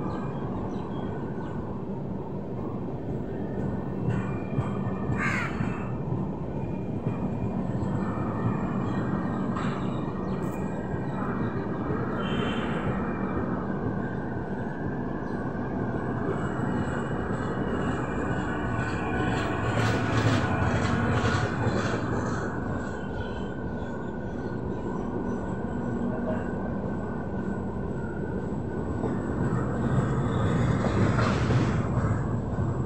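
Red-and-grey LHB passenger coaches of an express train rolling past, a continuous rumble of wheels on the rails. A few crow caws sound over it.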